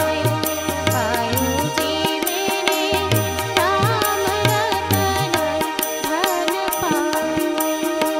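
A woman singing a melodic song, accompanied by harmonium and a steady drum beat.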